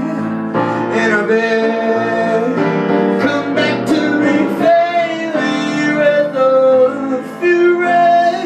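A man singing a melody, accompanying himself on piano.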